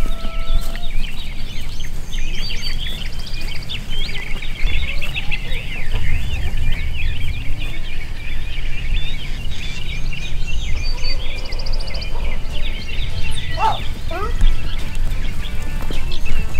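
Many birds chirping and chattering in a dense, continuous stream of short high calls, with a couple of rapid trills, over a steady low rumble.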